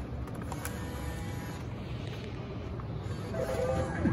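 Bill acceptor of a Key Master arcade machine taking in a dollar bill, with a few short clicks in the first second over a steady hum. About three seconds in, the machine's electronic game tones start as the credit registers.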